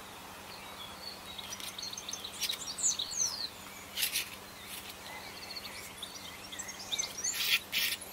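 Small birds chirping in the background, with short high chirps and sweeps in the first half. There are a few brief scrapes of paint strokes across the canvas, the loudest about four seconds in and twice near the end.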